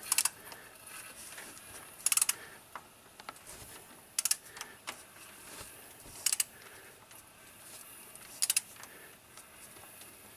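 Ratchet wrench on the crankshaft pulley bolt clicking in short rapid bursts about every two seconds as a Hemi V8 is turned over by hand.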